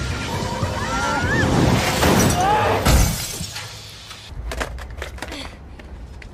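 Film action soundtrack: a crash with glass shattering about three seconds in, the loudest moment, under music, followed by a quieter stretch of scattered sharp clicks.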